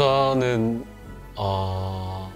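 A man's voice making two drawn-out hesitation sounds, like a long "um", the second starting about halfway through. Faint background music runs underneath.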